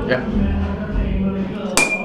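A dropped stick falls uncaught and hits the floor near the end with one sharp metallic clang that keeps ringing on a single high tone.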